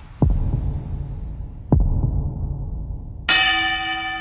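Two deep thuds about a second and a half apart, then a boxing ring bell rings once about three seconds in and keeps ringing, signalling the start of round one.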